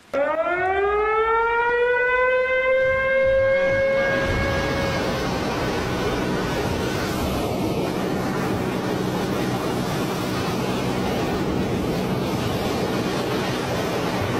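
A warning siren winds up, its pitch rising for about four seconds and then holding before it fades out about five seconds in. A loud, steady rush of water from dam spillways discharging carries on beneath it and then stands alone.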